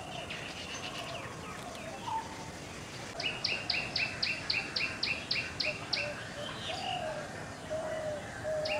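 Bronzed drongo calling: about three seconds in, a quick run of about a dozen short, sharp notes, each sliding down in pitch, about four a second. Fainter high calls come before it, and softer, lower calls follow near the end.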